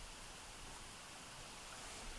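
Faint steady hiss of room tone, with no distinct sounds.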